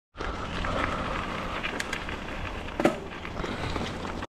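Mountain bike rolling over a dirt trail: steady tyre and rattle noise, with two sharp knocks, the louder about three seconds in.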